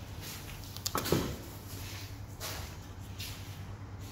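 Concrete tiles knocking and scraping against each other and the cardboard box as one is drawn out of the stack, with a sharp knock about a second in and fainter knocks after.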